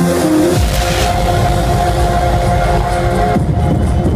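Loud electronic dance music from a club sound system: held synth chords over a deep, steady bass drone that comes in just over half a second in, with the bright top end dropping away near the end.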